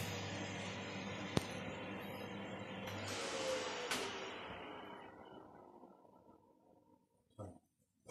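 Ninja Foodi Max air fryer and health grill running hot with a steady fan hum, a sharp click just over a second in, and a clunk around four seconds as the lid is lifted. After that the fan winds down with a falling whir and fades away.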